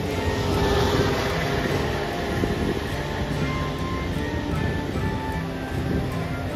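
Background music of slow, held notes over a steady low rumble.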